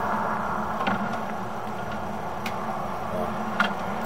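A machine running steadily: a low, even hum under a hiss, with a few faint clicks.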